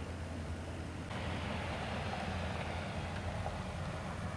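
Outdoor road traffic noise: a steady low rumble, joined suddenly about a second in by a louder rushing hiss of passing tyres that lasts about three seconds.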